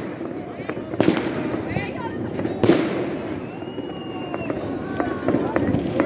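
Fireworks going off: two sharp bangs, about a second in and again near the middle, over a steady bed of more distant bursts, with a long thin whistle in the second half.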